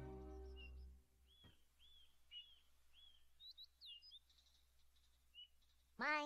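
A held music chord fades out in the first second, then faint bird chirps: a run of short arched calls about half a second apart, followed by a few quick higher sweeps.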